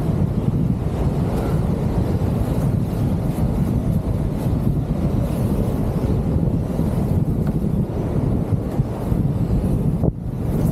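Strong steady wind buffeting the microphone, a continuous low rumble.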